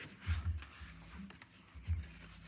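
Thick watercolour pages of a spiral-bound sketchbook being turned by hand: a soft paper rustle, with a couple of dull bumps as the pages and book are handled.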